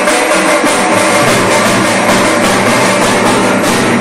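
Group of drummers playing large double-headed barrel drums: a fast, steady, loud rhythm of dense beats.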